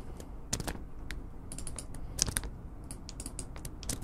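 Computer keyboard typing: irregular, quick key clicks as code is typed.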